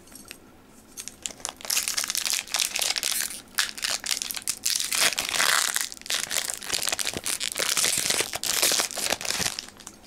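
Foil wrapper of a Pokémon trading-card booster pack crinkling and tearing as it is pulled open by hand: dense crackling that starts about a second in and stops shortly before the end.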